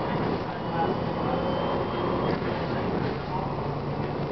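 Cummins ISM inline-six diesel of a 2007 Gillig Advantage transit bus running steadily under way, heard from inside the passenger cabin along with road noise.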